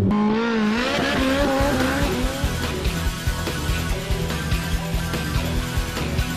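Ferrari F430 Spider's 4.3-litre V8 engine revving as the car pulls away, its pitch wavering up and down for the first two seconds or so. Then background music with a steady beat comes in.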